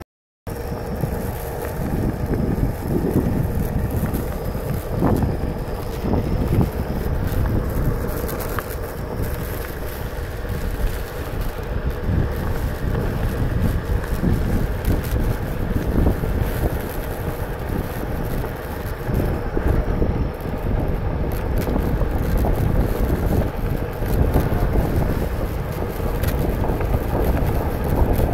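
Wind buffeting the microphone during a Onewheel ride, a loud, gusty rumble with a faint steady hum underneath.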